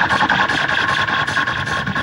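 Noisy, distorted techno from a DJ set recorded to cassette: a dense, continuous electronic texture with a strong mid-range drone and fast, even pulses.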